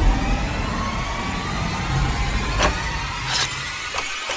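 Sound-design intro: a loud, dense rumble with faint rising tones. Two sharp clicks come in the second half, the mouse-click effects of a like-and-subscribe animation.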